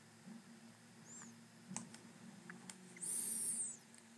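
Faint scattered clicks, with a brief high-pitched squeak about a second in and a longer, louder one near the end, each rising then falling in pitch.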